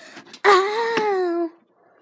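A child's voice making one drawn-out, wavering moan lasting about a second, starting about half a second in. It is preceded by faint rustling and clicks of toys being handled.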